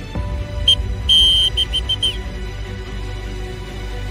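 A high whistle blown in a short pattern: one short blast, then a longer one, then three quick short blasts, over background music.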